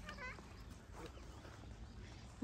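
A dog gives one short, faint, high-pitched yelp or whine near the start, over a low outdoor background hum.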